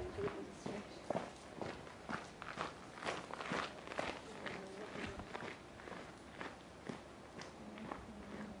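Irregular scuffs and footfalls of feet stepping on rock, a few a second.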